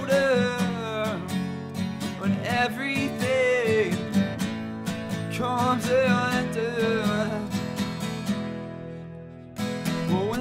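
Acoustic guitar strummed while a man sings long, sliding notes. The playing fades away about eight seconds in, then strumming starts again just before the end.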